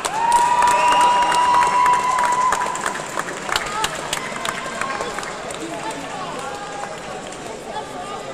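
Sports-hall crowd noise with scattered sharp claps. Right at the start a single high tone rises briefly and then holds steady for about two seconds, the loudest sound here.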